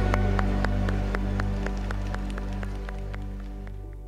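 The band's final held chord ringing and fading steadily away, with sharp hand claps about four a second over it.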